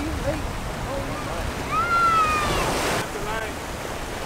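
Ocean surf washing over shoreline rocks, with wind on the microphone. Voices call out over it without clear words, including one long high call around the middle.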